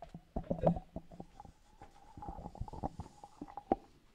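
Microphone handling noise: an irregular run of knocks, bumps and rustles as people settle onto stage stools and take up their microphones, the loudest knocks about half a second in, over a faint steady tone.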